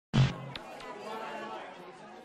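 A brief loud thump right at the start, followed by faint background chatter of voices.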